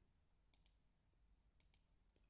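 Computer mouse clicking: two pairs of faint, sharp clicks about a second apart, over near silence.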